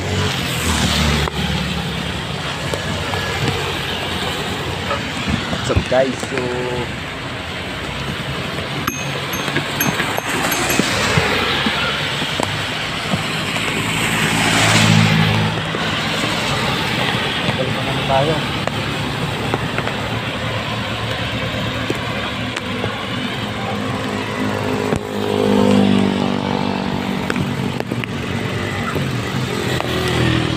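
Steady rush of rain and wet-road noise while travelling along a rain-soaked highway, with low engine hum underneath. A passing vehicle's engine and tyre spray swell up and fade about halfway through, and again near the end.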